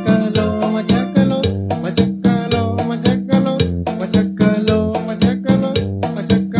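Korg iX300 arranger keyboard playing an instrumental tune over a steady drum beat and bass line.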